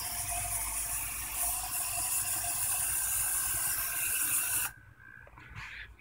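Aerosol can of disinfectant spray being sprayed in one long continuous hiss, cut off suddenly near the end as the nozzle is released.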